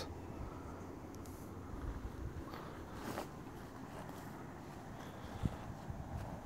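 Quiet outdoor background with a low wind rumble on the microphone and faint footsteps on grass. There is a small click about five and a half seconds in.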